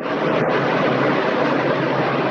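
Loud, steady rushing noise from a video-call participant's unmuted microphone. It cuts in suddenly and drowns out the speaker.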